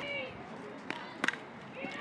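A softball bat strikes the pitched ball once, a sharp crack about a second in, with a fainter click just before it, over faint ballpark crowd noise.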